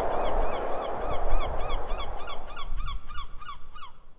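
Birds calling in short repeated notes, each bending in pitch, a few a second and coming thicker in the second half, over a low rumbling haze that fades away.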